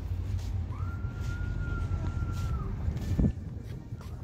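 Wind buffeting the microphone in a low rumble, with a thin steady high tone for about two seconds in the middle. A single sharp thump about three seconds in, after which the wind rumble drops away.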